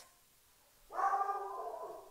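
A dog gives one drawn-out, whining cry, about a second long, starting about a second in.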